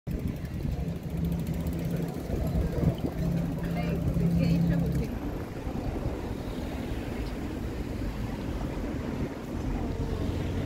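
Canal tour boat's engine running with a steady low hum as the boat passes close, with faint voices. About halfway through it cuts off abruptly, leaving general harbourside noise of distant voices.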